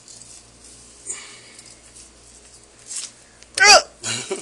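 Soft, brief handling noises as a bullhead's skin and innards are pulled away from the meat with pliers, then a short, loud burst of a man's voice near the end.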